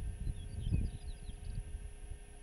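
A small bird gives a quick run of high chirps over about a second and a half. Underneath is the low, gusty rumble of wind buffeting the microphone.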